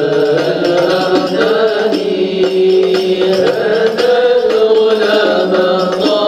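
Chanted devotional singing in praise of the Prophet: a slow, melodic vocal line of long held notes that glide from pitch to pitch.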